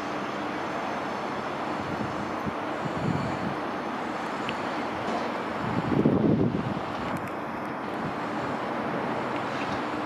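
CP Série 2400 electric multiple unit running over the station tracks: a steady rumble of wheels on rails, with wind on the microphone. A louder low burst comes about six seconds in.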